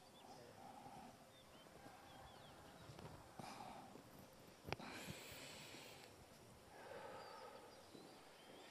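Near silence: faint, slow breaths, with one small click near the middle.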